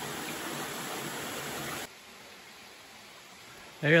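Steady rush of a small waterfall on a mountain stream, cutting off abruptly a little under two seconds in to a much quieter hiss.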